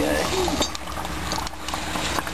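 Small clicks and crackles as lumps of quicklime (burnt marble) are handled and put into a bucket of water to slake. A brief voice is heard at the start.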